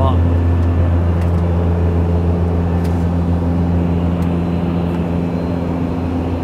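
Steady cabin drone of a Beechcraft Super King Air 200 in cruise: the deep hum of its twin Pratt & Whitney PT6A turboprops and propellers, with several steady tones over it. A couple of faint clicks sound inside the cabin.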